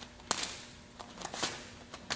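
Sharp slaps of hands and forearms meeting as a punch is blocked, the arm trapped and a back fist thrown. One crisp slap comes just after the start, then a quicker run of lighter slaps and brushes about a second in.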